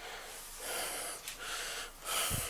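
A man breathing hard: two long breaths in quick succession, the first starting about half a second in.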